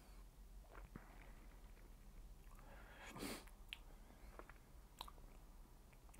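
Near silence, with a few faint mouth and lip sounds as a sip of whiskey is worked around the mouth; the loudest is a soft smacking noise about three seconds in.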